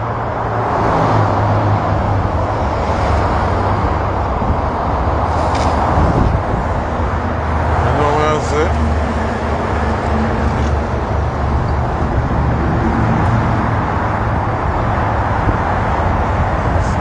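Road traffic noise by a street: a steady low engine hum under a broad rushing noise, with a brief voice about eight seconds in.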